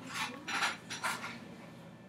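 Hands working long hair into a braid: a few soft rustles in the first second or so, then quieter.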